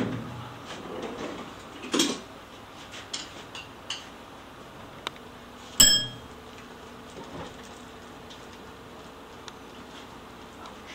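Metal hardware being handled: a knock about two seconds in, a few light clicks, then a sharp metallic clink near six seconds that rings briefly.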